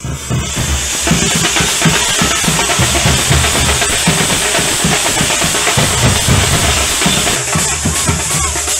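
Live procession drumming from chenda and band drums, playing a loud, fast, continuous beat. Deep drum thuds sit under a steady high hiss of cymbals.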